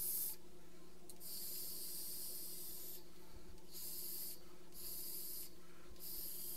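Several hissing draws on a Freemax Scylla sub-ohm tank run as an RTA with a 0.4-ohm dual coil at about 55 watts, air rushing through the tank as the coil fires. The longest draw lasts about two seconds; the shorter ones come in quick succession.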